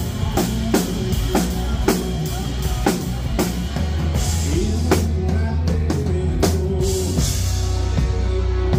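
Live band playing: a drum kit keeps a steady beat of about two hits a second, with cymbal crashes, under electric guitar.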